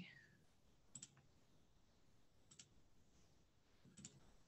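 Near silence with a few faint computer mouse clicks, roughly a second and a half apart.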